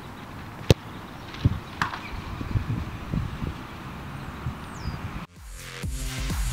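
A football struck hard with one sharp thud less than a second in, followed about a second later by a fainter knock with a short ring as the ball hits the metal goal frame, over steady outdoor background noise. Electronic music starts near the end.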